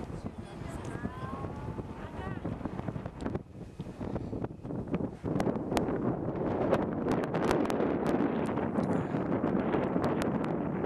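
Wind buffeting the camera microphone in open desert, a rough rumbling rush that grows much louder about halfway through, with many sharp crackles in the louder part.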